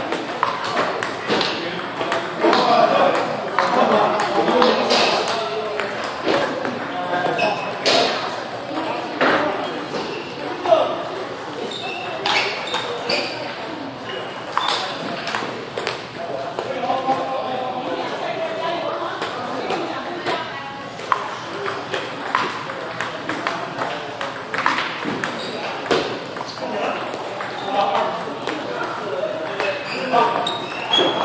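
Table tennis ball clicking off the paddles and the table in irregular rallies, with voices talking in the background.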